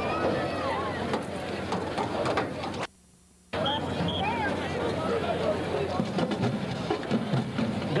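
Indistinct chatter of nearby stadium spectators, several voices overlapping, recorded on a camcorder's microphone. The sound drops out completely for about half a second, about three seconds in, where the recording is paused and restarted.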